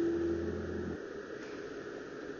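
Low steady hum with a faint held tone fading out; the hum cuts off abruptly about a second in, leaving a faint hiss.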